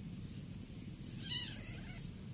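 Kitten giving one short, high-pitched mew a little over a second in.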